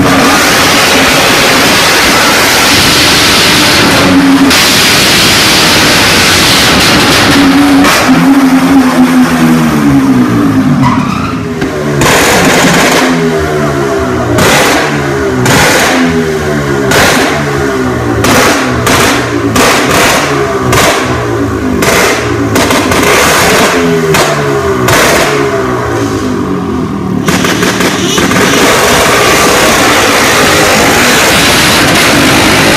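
Wall-of-death motorcycle engines running hard inside the wooden drum. From about eight seconds in, the engine note falls and rises again about once a second.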